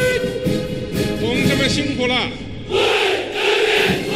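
Ranks of soldiers on parade shouting in unison. First comes a long held call at one steady pitch, then about three seconds in a second loud massed shout from many voices at once.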